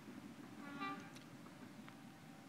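Passenger train coaches rolling past at a distance, a low steady rumble. A short horn toot sounds a little under a second in, lasting under half a second, and a couple of faint clicks follow.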